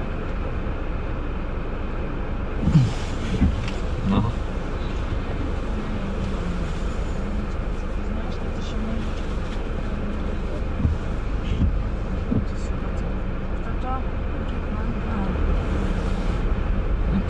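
Steady low rumble of an idling car and surrounding city traffic, heard from inside a car stopped in traffic, with a few short knocks, the loudest about three seconds in.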